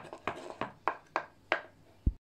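Chef's knife chopping cooked egg on a wooden cutting board: sharp knocks of the blade on the board, about three a second.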